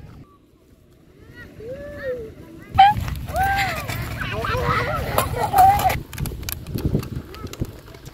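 Children's high voices calling and shouting, faint at first and louder from about three seconds in, over a low rumble of wind on the microphone.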